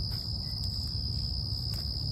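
Crickets trilling in a steady, unbroken high-pitched chorus over a low background rumble.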